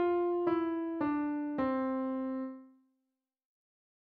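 Piano playing the last notes of a descending C major scale, stepping down one note about every half second to middle C. The final middle C is held and dies away about three seconds in.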